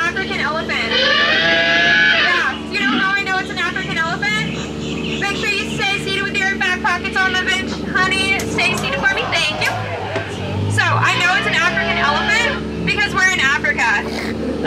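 A ride skipper talking over the boat's microphone and loudspeaker, above the steady low hum of the tour boat's motor, which drops and rises again about two-thirds of the way through.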